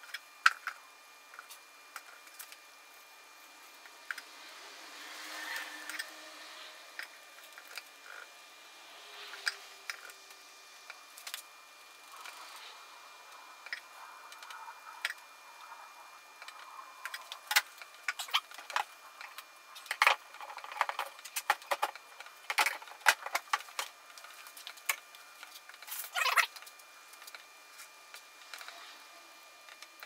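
Uncapping tool scraping wax cappings off a frame of honeycomb: irregular scratchy clicks and scrapes, thickest in the second half.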